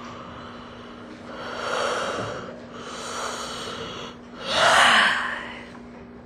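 A woman yawning with her mouth wide open as part of a vocal warm-up: three long, breathy yawns, the last one, near the end, the loudest. A faint steady hum lies underneath.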